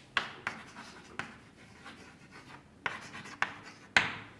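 Chalk writing on a blackboard: a series of sharp taps and short scratchy strokes as words are chalked up, with the loudest tap at the very end.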